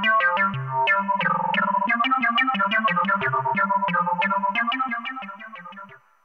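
Eurorack modular synthesizer patch playing a fast sequence of short plucked notes over a bass line, several notes a second. The sound fades away near the end as the audio channel's level knob is turned down.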